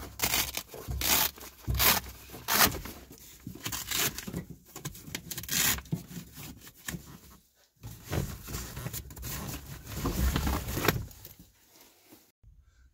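Nylon storage bag being pulled free of its Velcro mount: a run of irregular ripping and rustling sounds of hook-and-loop fastener and heavy fabric, loudest near the end.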